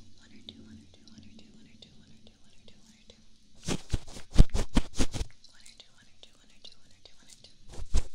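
Close-miked ASMR trigger sounds: a quiet stretch with faint small ticks, then, about three and a half seconds in, a quick run of sharp taps and crackles from a tool worked right at the microphone for under two seconds. A second run starts near the end.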